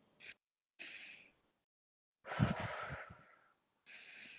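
A crying woman breathing: two short breaths, then a longer sighing exhale a little over two seconds in, and another breath near the end, as she lets go on a guided out-breath.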